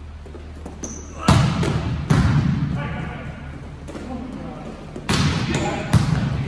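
A volleyball being hit on an indoor court: four sharp smacks, one about a second in, another a moment later and a pair near the end, each ringing on in the hall's echo. Players' voices call between the hits.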